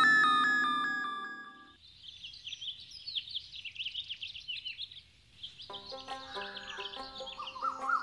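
A musical chime sting that rings and fades over the first couple of seconds, then birds chirping in quick, high calls. Soft background music comes in about two-thirds of the way through.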